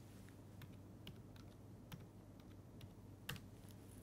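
Faint typing on a computer keyboard: scattered single keystrokes, with one louder keystroke about three seconds in.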